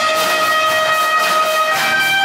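Live ensemble music led by brass instruments, playing held notes over a steady beat, moving to a new note near the end.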